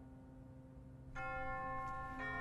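Solo grand piano: a held chord fades quietly, then a new higher chord is struck a little over a second in and rings on.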